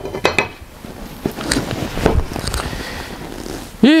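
Steel pieces clinking and knocking together as a metal plate is handled and set onto a small welded steel truss section: a few sharp clanks at the start, then lighter knocks and handling.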